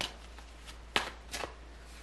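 Tarot cards being shuffled and handled by hand, a soft papery rustle with a few sharp card flicks, the loudest about a second in.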